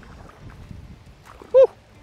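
A man's short excited "Woo!" about one and a half seconds in, over faint low background noise.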